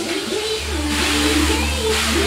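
Tagada fairground ride in motion with its music playing loud: a wavering pitched line over a deep steady drone that comes in about half a second in.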